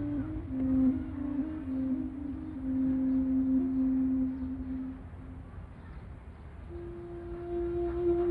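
Background music: a slow flute melody of long held notes that stops about five seconds in, then starts again on a higher held note near the end, over a low steady rumble.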